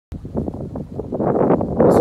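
Wind buffeting the microphone: a rough rumbling noise that builds in level toward the end.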